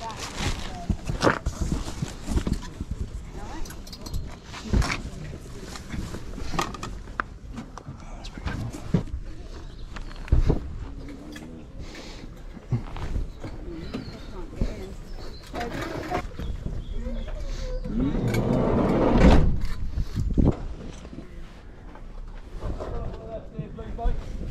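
Close handling of clothing and cardboard boxes: repeated rustles and small knocks of fabric and card, with voices in the background. A broader, louder swell of noise comes about eighteen seconds in.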